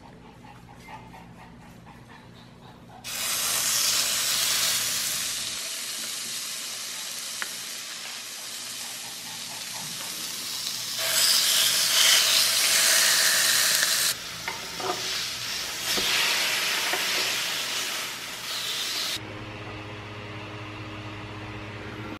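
Salmon fillets sizzling as they fry in a hot pan. The frying hiss starts about three seconds in and rises and falls in level several times, easing off near the end.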